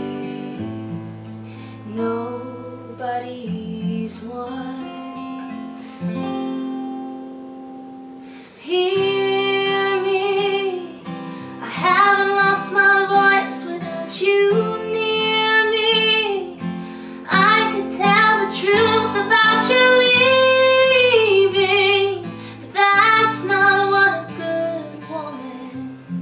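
A woman singing to a strummed acoustic guitar. The first eight seconds are softer, then the voice and guitar come in much louder about nine seconds in.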